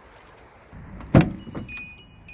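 The front door of a Hyundai Grace van is unlatched and pulled open, with one loud clunk about a second in and a couple of lighter knocks after it. Near the end a steady electronic warning chime starts up, signalling that the door is open.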